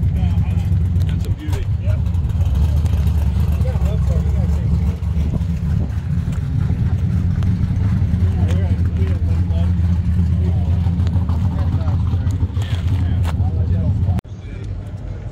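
A car engine running steadily at idle, a deep, even rumble that cuts off suddenly at the end.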